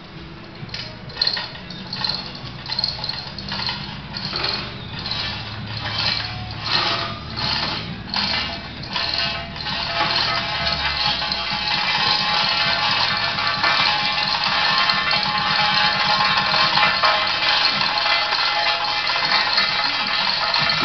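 Metal chain of a hand-operated hoist clinking about twice a second as it lowers a heavy solid-iron keel. About halfway through the clinks merge into a steady rattle.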